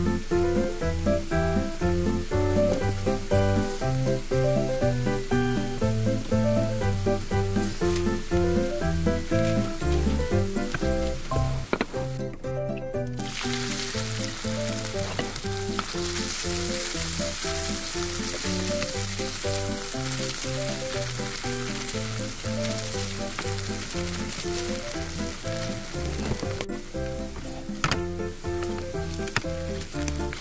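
Shredded potatoes frying in a nonstick pan, a steady sizzle that grows louder about halfway through, under background music with a steady beat.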